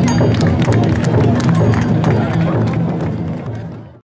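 Dense crowd of festival bearers shouting around a taiko-dai (chousa) drum float, with many sharp hits mixed into the voices. The sound fades out near the end.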